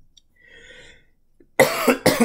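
A person coughs, a sudden loud cough about a second and a half in, after a faint breathy sound.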